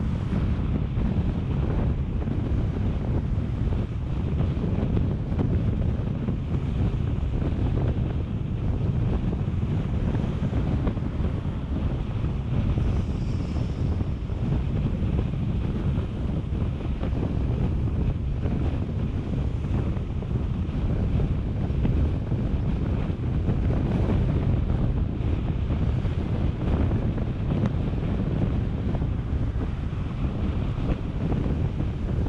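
Steady low wind buffeting on the microphone over the road noise of a moving car.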